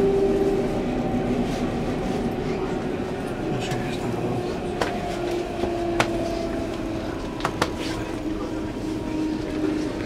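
Berlin S-Bahn electric train running, a rumble with a motor whine that drifts slowly down in pitch. A few sharp clicks come in the middle.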